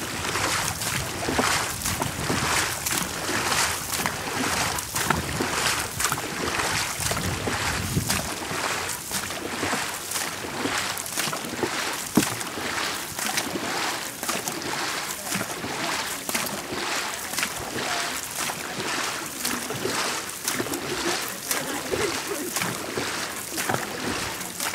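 Dragon boat paddles striking and pulling through the water in unison, a steady rhythm of splashes over the continuous rush of water past the hull.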